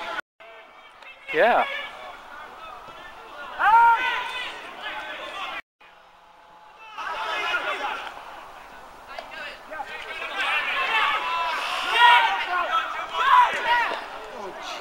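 Shouting voices on a football pitch: scattered loud calls that bend up and down in pitch, thickest in the last few seconds. The sound cuts out completely twice, very briefly, once right at the start and once about six seconds in.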